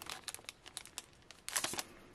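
Clear plastic cellophane sleeve crinkling as a stack of foil sticker sheets is slid out of it: scattered small crackles, with a louder cluster about one and a half seconds in.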